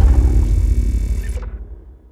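The tail of a car-themed intro sound effect: a deep rumble that fades steadily and is gone by the end.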